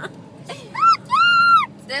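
A woman's two short, high-pitched squeals of excitement, each rising and then falling in pitch, the second one longer.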